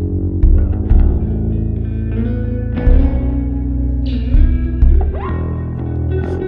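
Instrumental break of a slow band song: electric guitar picking out a lick over a held bass line, with several deep, booming kick-drum hits from a kick drum set inside a 55-gallon barrel.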